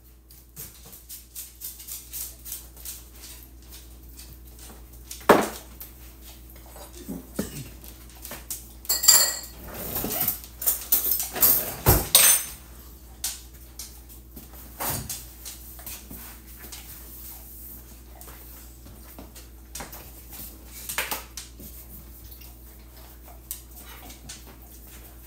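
A metal spoon and dishes clinking and clattering on a kitchen counter, with several sharp knocks and a busy run of clatter in the middle. A dog licks up dropped food close by.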